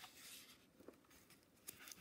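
Faint rustle of a paper picture-book page being turned, mostly near the start, followed by a couple of soft small ticks.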